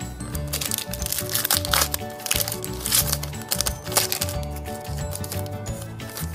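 Crinkling and tearing of a Pokémon booster pack's foil wrapper as it is ripped open, in several crackly spells during the first four seconds, over background music with a steady low beat.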